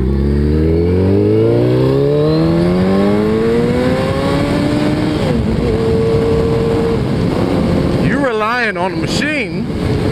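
Suzuki Hayabusa's inline-four engine accelerating, its pitch rising steadily for about five seconds, then briefly dipping and holding steady at cruise, with wind rushing over the helmet-camera microphone. A voice is briefly heard near the end.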